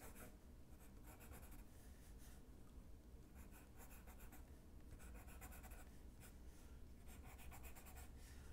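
Faint scratching of a graphite pencil on drawing paper: quick runs of short strokes with brief pauses between them, as grass blades are sketched.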